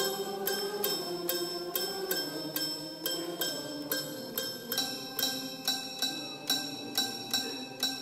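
Toy piano played as a solo: single bell-like, tinkling notes struck a few times a second, each ringing briefly over softer sustained tones.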